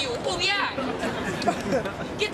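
Speech only: a person talking animatedly in a high-pitched voice, with crowd chatter behind.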